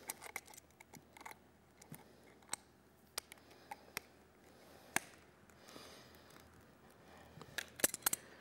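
Pliers and a metal hose clamp being worked onto a rubber air hose: scattered faint metallic clicks, the sharpest about five seconds in and a few more close together near the end.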